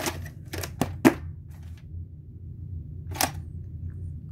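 Hard plastic clicks and knocks from a VHS cassette being lifted out of its plastic clamshell case and turned over: several sharp clicks in the first second or so, the loudest about a second in, and one more a little after three seconds, over a low steady hum.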